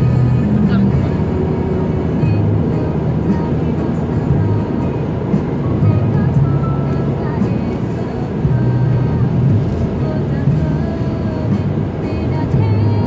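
Music playing inside a moving car's cabin over steady road noise at highway speed.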